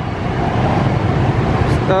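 Street traffic noise from passing motor scooters and cars, a steady rumble that grows louder in the first half second.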